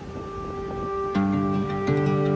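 Gentle background music of plucked strings, fading in and becoming fuller and louder about a second in.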